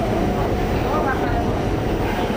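Subway train running, heard from inside the car: a steady rumble with passengers' voices mixed in.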